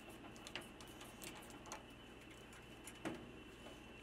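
Faint, irregular clicks of a hand screwdriver turning a screw out of a microwave oven's sheet-metal back panel.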